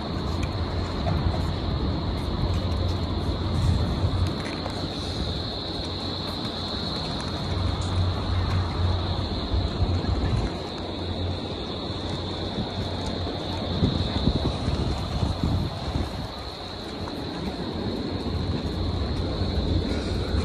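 Open-air city square ambience: a steady wash of noise with low rumbling swells, like distant traffic and wind on the microphone, and a thin steady high hiss.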